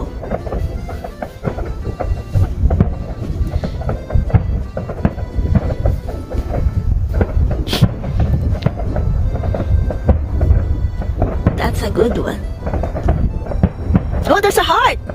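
Distant fireworks going off: a continuous low rumble of booms with sharper cracks scattered through it, the sharpest about eight seconds in.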